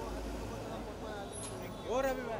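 People's voices: faint talk, then a louder call near the end, over a low steady rumble.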